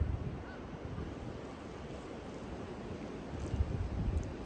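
Wind on the microphone: a steady low rumble with a faint hiss, with a few louder gusts near the start and end.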